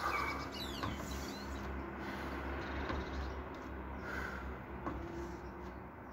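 Quiet outdoor ambience: a steady low rumble with a few faint bird calls, the clearest within the first second.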